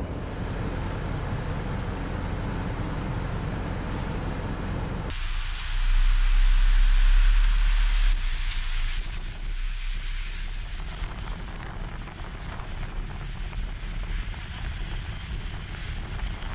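Steady low rumble of the shuttle bus running for about five seconds, then an abrupt change to a hissy outdoor noise with wind buffeting the microphone, loudest about six to eight seconds in.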